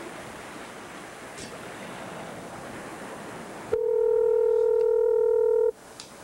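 Telephone ringback tone heard over the studio phone line while the dialled number rings unanswered: a steady hiss for about four seconds, then one two-second ring near the end, in the standard two-seconds-on, four-seconds-off ringing cadence.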